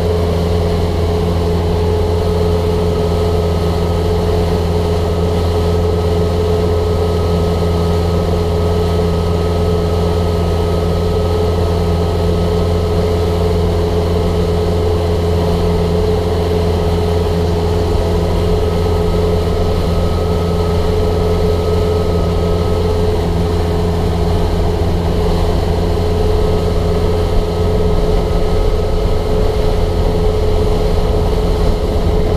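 Motorboat engine running steadily at low speed, just above idle: a constant hum with a steady higher tone over it, growing slightly louder near the end.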